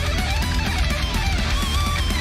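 Metal music with an electric guitar solo: a singing lead line that bends and wavers in pitch over a heavy, distorted band backing.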